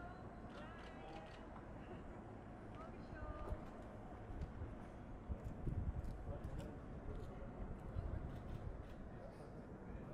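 Outdoor ambience: a low wind rumble on the microphone, faint indistinct voices in the background, and a few soft clicks.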